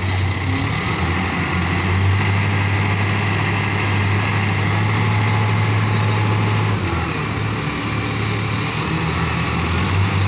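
Diesel engine of an 8-ton Voltas forklift running steadily, its note dipping briefly about seven seconds in.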